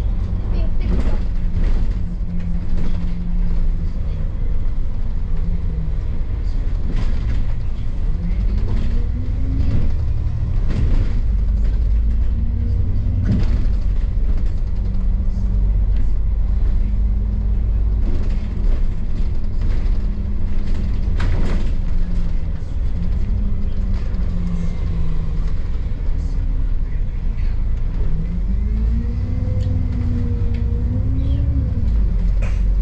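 Double-decker bus heard from inside on the upper deck: a deep steady rumble of the engine and running gear. The engine note rises and falls several times as the bus pulls through its gears, with occasional knocks and rattles from the body.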